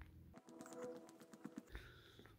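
Near silence, with faint steady tones and a few soft clicks for a little over a second in the middle.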